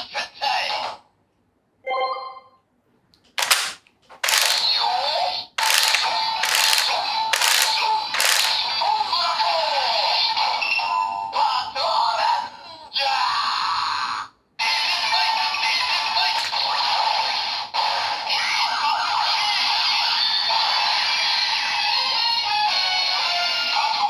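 Bandai DX Don Blaster toy gun with an Avataro Gear loaded, playing its electronic sounds through its small speaker: a short chime, a string of sharp hits, then a looping transformation tune with voice calls of sentai names such as 'Patranger!'. The tune stops briefly about two-thirds through and then starts again.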